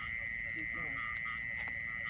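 Night chorus of frogs and insects: a steady high-pitched drone with short calls repeated about three times a second.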